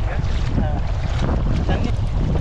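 Strong wind buffeting the microphone as a low, steady rumble, over choppy seawater washing and splashing close by.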